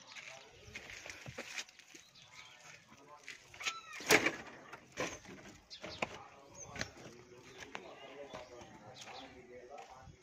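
People's voices talking at a distance, with a loud, brief call about four seconds in.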